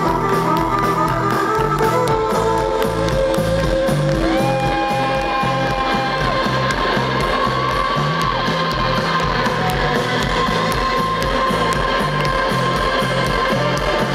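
Live rock band playing an instrumental passage: electric guitars, bass and a steady drum beat. Long held lead notes slide up into pitch about four seconds in and again near eight seconds.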